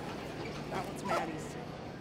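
Faint airport baggage-hall ambience: a steady low hum under distant voices, with a brief higher voice-like sound about a second in.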